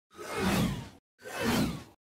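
Two whoosh sound effects of a logo sting, one right after the other, each swelling up and fading away over about a second.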